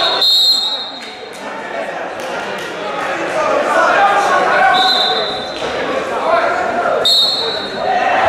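Referee's whistle, three blasts of about a second each, over shouting and talking voices in a large hall, with a few thumps.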